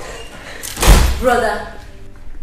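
A single loud door slam about a second in, followed at once by a short wordless vocal exclamation.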